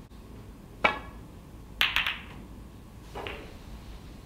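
Snooker break-off. The cue tip strikes the cue ball with a sharp click. About a second later comes a quick cluster of clicks as the cue ball hits the pack of reds and the balls knock together, then a softer knock of a ball near the end.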